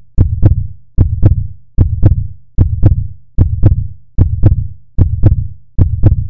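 Heartbeat sound effect: a steady double thump, lub-dub, repeating about every 0.8 seconds, each beat deep with a sharp click on top.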